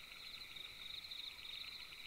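Faint, steady chirring of crickets, a high trill with a fine rapid flutter.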